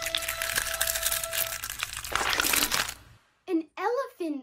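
Egg-hatching crackling from an old cartoon soundtrack, over a held music chord that fades out about a second and a half in. A louder burst of crackling follows, and near the end come short sliding, squeaky voice calls.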